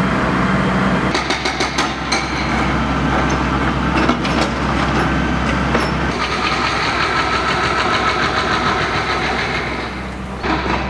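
Construction machinery engine running steadily, with a quick run of sharp clicks or knocks a second or two in. The sound changes abruptly about one and six seconds in.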